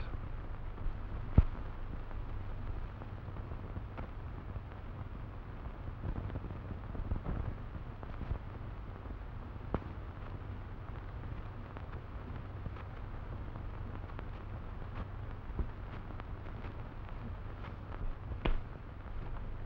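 Steady low hum and hiss of an old film soundtrack, with scattered faint clicks and one sharp click about a second and a half in.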